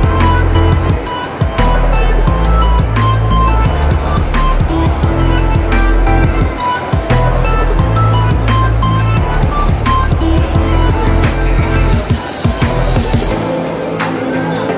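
Background music with a steady beat and a heavy bass line; the deepest bass drops out near the end.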